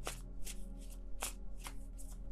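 Tarot deck being shuffled by hand, the cards slapping together in short quick strokes about twice a second.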